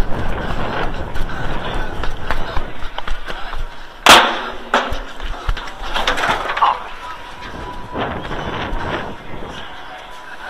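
Rustling and handling noise from a body-worn camera while a fan scrambles through metal stadium seats after a batting-practice ball. One sharp, loud bang comes about four seconds in.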